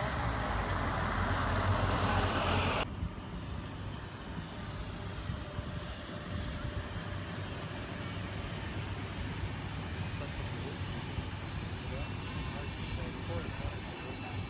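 Articulated city bus's diesel engine running close by, a loud steady rumble and hiss that stops abruptly about three seconds in. After it comes a quieter low outdoor rumble, with a brief high hiss in the middle.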